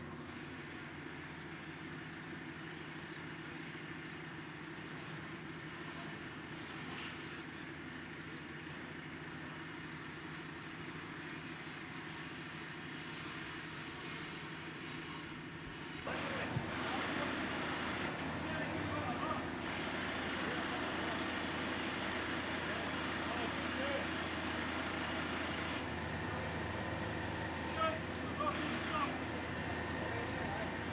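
Mobile crane's diesel engine running steadily. About halfway through, the sound cuts to a louder mix of machinery and voices, with a few short sharp sounds near the end.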